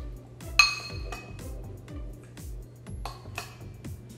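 A metal spoon clinking against a glass bowl: one sharp, ringing clink about half a second in and two lighter clinks around three seconds. Background music with a steady beat plays throughout.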